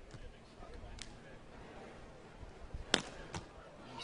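A beach volleyball struck by players' hands and arms during a rally: a faint smack about a second in, then two sharp, loud smacks in quick succession about three seconds in, over a low murmur of an outdoor stadium.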